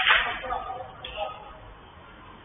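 A single sharp smack right at the start, like a football being struck hard, with a short ring-out under the covered pitch's roof, followed by players' faint shouts.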